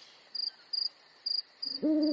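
Night-time ambience: four short cricket chirps, followed by an owl's low hoot that starts near the end.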